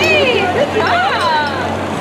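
Spectators' voices: several people calling out and talking over one another, words unclear, with sharply rising and falling pitch, over a steady low hum.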